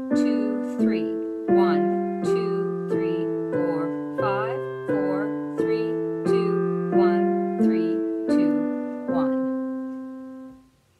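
Roland digital piano playing the one-octave C major scale in contrary motion, hands together: two notes struck at a time, about one pair every 0.7 s, spreading out an octave each way from middle C and coming back. It ends on a held C that fades away.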